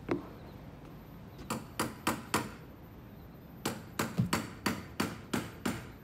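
A series of sharp knocks: one near the start, then four in quick succession, a pause, and then about eight more at roughly three a second.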